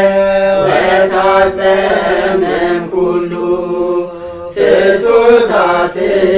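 Several voices, men, women and children together, chanting a prayer in unison in long held notes, with a short break about four and a half seconds in.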